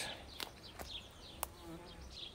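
A flying insect buzzing faintly, its pitch wavering, plainest in the second half, with a few faint sharp clicks.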